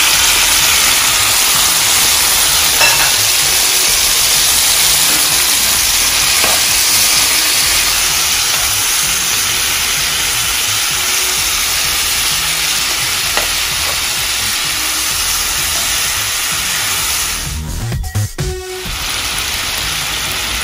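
Chicken wings, already simmered in vinegar and soy sauce, frying in oil and garlic in a nonstick pan: a loud, steady sizzle as they are sautéed and turned with a spatula. The sizzle cuts out briefly near the end, then comes back.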